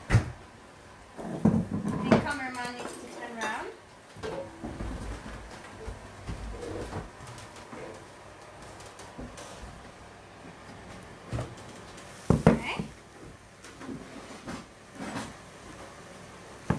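Kitchen clatter: pots, pans, plates and cutlery knocking and clinking on and off, with a sharp knock right at the start.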